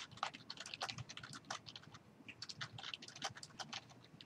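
Computer keyboard being typed on: quick, irregular, faint keystrokes with a brief pause around the middle.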